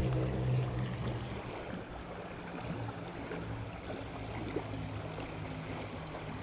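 River water washing against the bank as small waves come in, a steady rushing hiss. A low hum underneath fades out in the first second or two.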